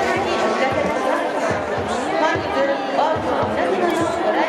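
Ballpark crowd: many spectators' voices chattering and calling at once, over music with a steady low beat.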